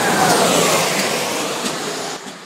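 Intro sound effect under a logo: a loud rushing whoosh with faint falling tones in it, beginning to fade near the end.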